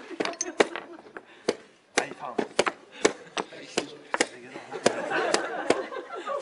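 Quick, irregular clacks of chess pieces set down hard on the board and the chess clock's buttons slapped in turn during a blitz game, roughly two knocks a second. Spectators' voices and chuckles rise near the end.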